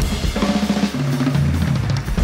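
Big band jazz-rock recording in a drum-led passage: drum kit playing snare, bass drum and cymbals, over low held notes that change pitch.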